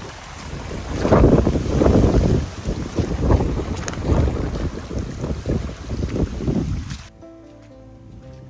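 Wind buffeting the microphone in loud, uneven gusts on an open monsoon trail. About seven seconds in it cuts off suddenly and soft background music begins.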